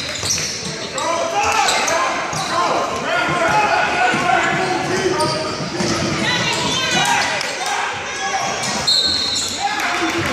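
A basketball game in an echoing gym: a ball bouncing on the hardwood court under the shouts and chatter of players and spectators, with a short high squeak about nine seconds in.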